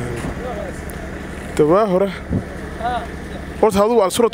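A man speaking in short bursts with pauses, over a steady low rumble of street traffic.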